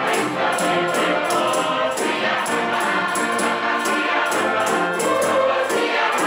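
Mixed youth choir singing a traditional South African song in harmony, accompanied by a string orchestra with double basses. A steady beat of sharp, high percussion strokes runs under the voices.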